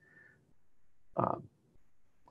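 A pause in a man's speech, broken about a second in by a short, creaky hesitant 'uh'.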